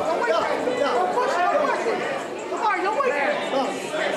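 Ringside crowd chatter: several voices talking and calling out at once, overlapping, with no single speaker standing out.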